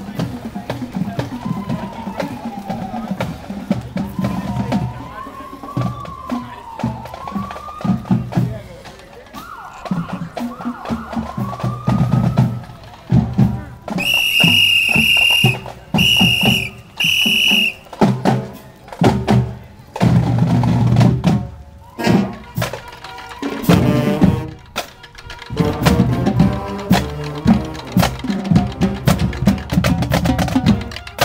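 Marching band drumline playing a cadence on snare and bass drums. Three sharp whistle blasts come about halfway through, and the drumming grows denser after them.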